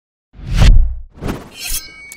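Sound effects for an animated logo intro: a loud, deep boom with a crash, then a smaller second hit and a short swell that ends in a brief ringing shimmer.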